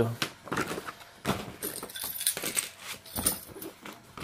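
Paper greeting cards and a plastic gift bag being handled: scattered rustling, crinkling and light clicks, with a brief crinkly stretch in the middle.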